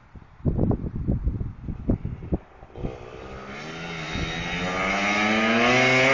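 Quad bike (ATV) engine approaching and accelerating: its pitch rises and it gets steadily louder over the last three seconds. Before that come a few short low rumbling bursts.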